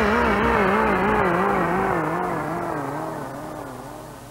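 The final chord of a death/doom metal song, a distorted electric guitar left ringing with a slow, regular warble in pitch, fading steadily away.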